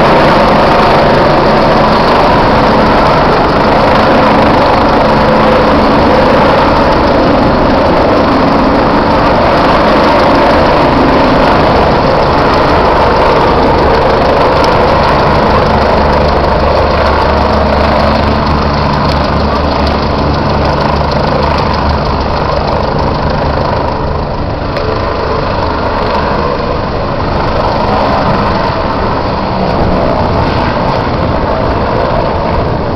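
Eurocopter BK 117 rescue helicopter's main rotor and twin turbines, loud and steady as it hovers low and sets down, then running on the ground. The sound eases a little over the second half once it is down.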